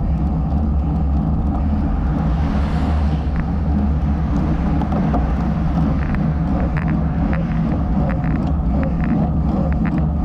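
Steady wind rush and rumble on the microphone of a bicycle riding at about 15 mph, with road traffic passing. A hiss swells a couple of seconds in, and scattered light clicks come in the second half.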